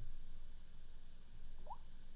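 Quiet room tone with a steady low hum, and one short, faint rising squeak near the end.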